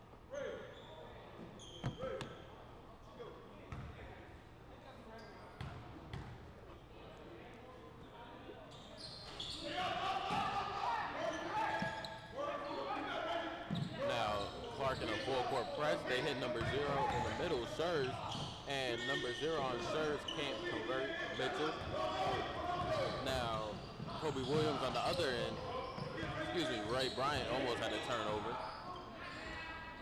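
Basketball bouncing on a hardwood gym floor in a large, echoing hall, mixed with the voices of players and spectators. It starts with a few separate bounces, then grows louder and busier about nine seconds in as play gets going, with many overlapping voices.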